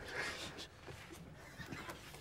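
Faint, stifled laughter: a person trying to laugh without making noise, with short wheezy breaths near the start.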